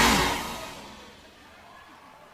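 The tail of a loud band hit in a live gospel song: a chord rings on with a voice gliding down in pitch, fading over about a second into a brief lull in the music.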